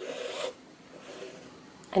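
Embroidery thread being pulled through fabric stretched in a hoop: a brief rasping rub lasting about half a second, followed by fainter rustling.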